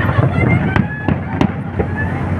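Fireworks display going off: a continuous crackling rumble of bursting shells with several sharp bangs, the loudest about three-quarters of a second and a second and a half in.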